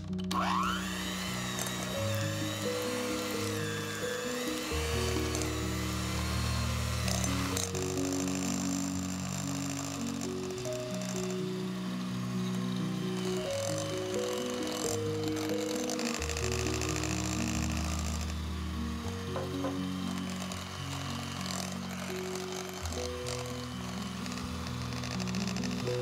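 Kenwood electric hand mixer switching on with a rising whine and running at low speed, beating softened butter in a glass bowl. Background music plays throughout.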